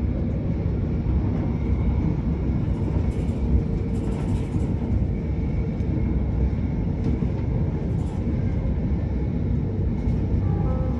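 Train running at speed, heard from inside the carriage: a steady low rumble of wheels on track with a faint steady hum over it.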